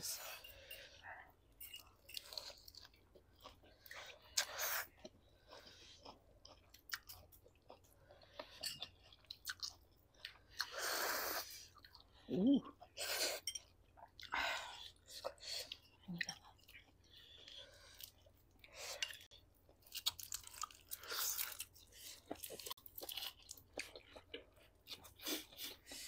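Close-up eating sounds: people chewing spicy noodles and crunching iceberg lettuce leaves, in many short irregular bursts, with a brief murmur of voice about halfway through.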